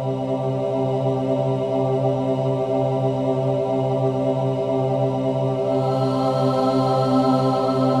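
Great Highland bagpipes playing, the drones holding one steady low chord under the chanter's tune.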